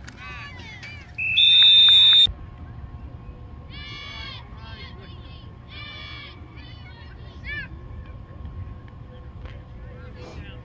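A referee's whistle blown once in a shrill blast of about a second, starting about a second in and blowing the play dead. After it come spectators' shouts.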